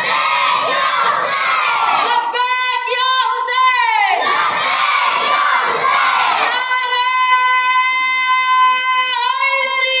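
Religious slogan-chanting: a man shouts long drawn-out calls through a microphone and loudspeakers, and a crowd shouts back in unison between them. There are two calls, the second held about three seconds, each dropping in pitch at its end.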